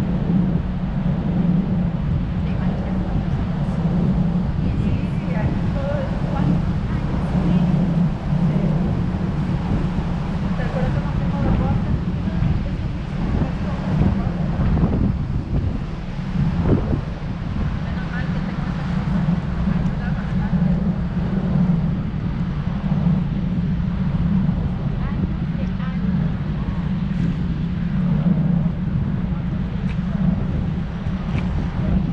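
A river tour boat's engine runs steadily as a continuous low drone, with wind buffeting the microphone on the open deck.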